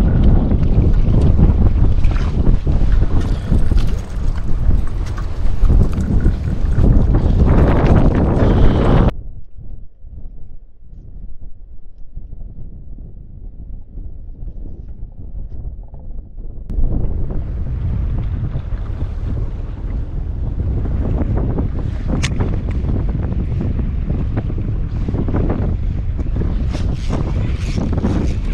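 Wind buffeting the microphone at sea, a loud, rough low rumble. About nine seconds in it cuts abruptly to a muffled, much quieter stretch, and the wind noise comes back at about seventeen seconds.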